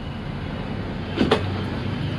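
Idling bus engine giving a steady low hum, with two quick knocks a little over a second in.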